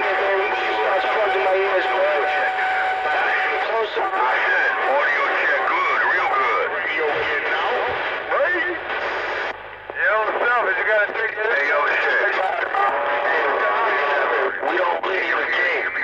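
CB radio loudspeaker carrying several stations keyed up at once: garbled, overlapping voices with the thin, narrow sound of radio audio. A steady whistle runs through the first few seconds, and the signal drops out briefly about ten seconds in.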